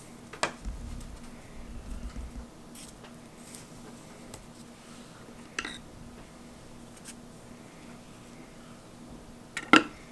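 A few sharp knocks and taps from hands and small items being handled on a work table while glued wing panels are pressed flat, with a low handling rumble in the first couple of seconds. The loudest knock comes near the end.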